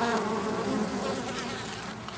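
Honey bees from a colony in a tree hollow, many flying close around the microphone at the nest entrance, making a steady buzzing hum that wavers slightly in pitch and eases off a little toward the end.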